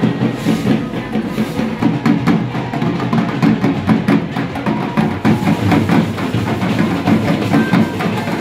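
Dhol drums beaten together by a marching group of drummers in a dense, steady rhythm.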